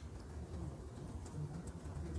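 Faint felt-tip pen writing on paper, over a low hum.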